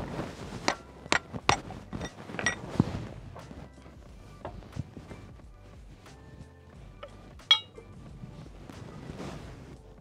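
A hammer striking a steel punch to drive the hitch pins out of a mini excavator's bucket linkage. The metal-on-metal blows ring and come about twice a second for the first three seconds, then a few more follow, with one sharp ringing clink about seven and a half seconds in. Background music plays underneath.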